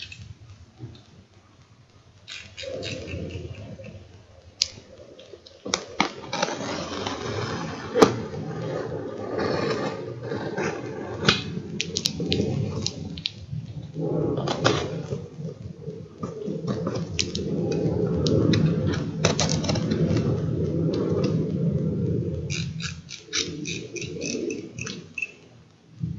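Snap-off utility knife cutting through packing tape and cardboard on a parcel: a long, scraping cut broken by a few sharp knocks, with a quick run of small clicks near the end as the blade slider is worked.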